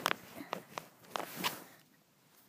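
Handling noise from fingers gripping and tapping the body of the smartphone that is recording: about five short clicks and knocks over a second and a half.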